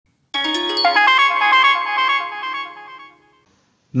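A short electronic musical jingle: a few quick ringtone-like notes that then hold and fade out over about three seconds.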